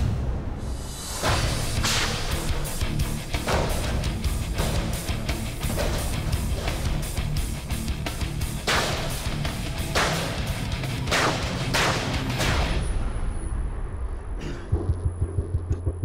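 A heavy knife blade chopping and stabbing into galvanized steel trash cans: a rapid, irregular series of hard metallic impacts over background music. The chopping stops about thirteen seconds in, leaving the music with a pulsing bass.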